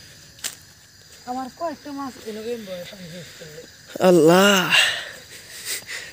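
A man's voice in short, unclear utterances, quieter at first and then one louder drawn-out vocal sound about four seconds in, with a single click about half a second in.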